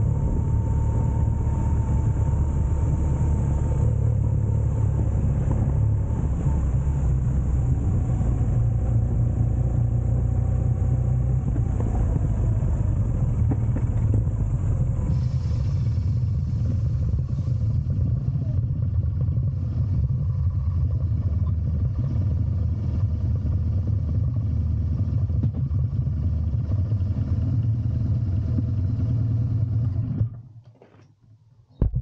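BMW R1200GS Rallye's boxer-twin engine running as the motorcycle rolls slowly, a steady low rumble with some road and wind noise. The sound stops suddenly at the very end as the bike comes to rest.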